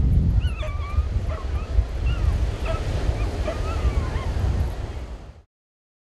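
Dogs whining and yipping in short, wavering cries over heavy wind rumble on the microphone; all sound cuts off suddenly near the end.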